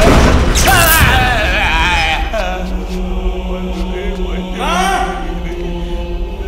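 Horror film score: chanting choir voices over a steady low drone, opening with loud booming hits, then another swell of voices near the end.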